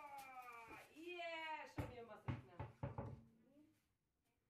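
A child's drawn-out, straining voice, then a car tyre dropping onto a concrete floor with about four thumps as it bounces and settles.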